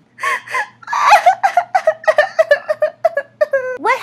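A high voice acting out a doll crying: a fast run of short, broken sobs.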